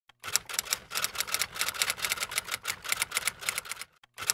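Typewriter keystroke sound effect: a rapid, even run of key clicks, about seven a second, as title text types itself out.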